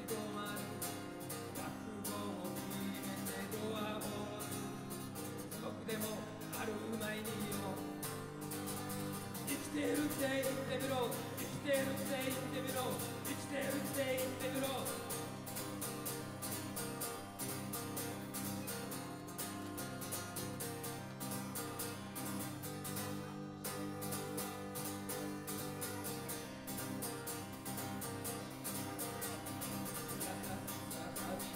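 Acoustic guitar played solo and steadily, with a man's singing voice carrying a melody over it for several seconds in the middle, where the music is loudest.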